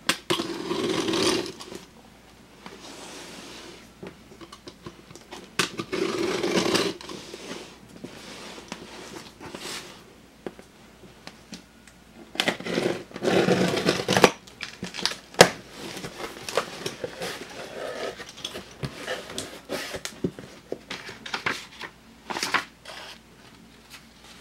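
Utility knife slitting packing tape on a cardboard shipping box, with scraping, tape tearing and the cardboard flaps being pulled open. It comes in three longer noisy bursts, with sharp clicks and knocks of handling between.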